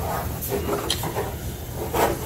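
Hands sliding over and shifting a fiberglass fender, rubbing against its surface, with a few light knocks, over a steady low shop background noise.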